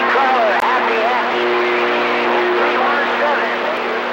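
CB radio receiver with its squelch open, giving a loud, steady hiss of static. Warbling, garbled voice-like sounds from a weak or off-frequency station ride on the noise, with steady low tones underneath.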